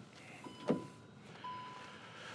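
Faint electronic warning beep from the Volkswagen Multivan T7, a steady single tone about half a second long repeating about once a second, with one soft knock early in the beeping.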